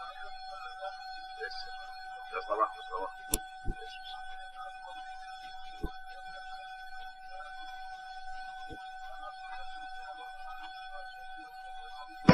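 Quiet cockpit voice recorder audio: a steady electrical tone with a fainter higher overtone, a few faint clicks, and brief muffled voices about two to three seconds in.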